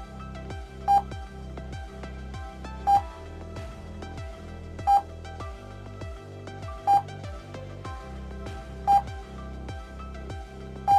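Electronic background music with a short, loud, high beep every two seconds, five in all, each beep signalling the next number flashed in a mental-arithmetic drill.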